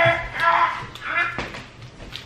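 Wordless vocal sounds from a person, in three short high-pitched bursts, with one sharp click about one and a half seconds in.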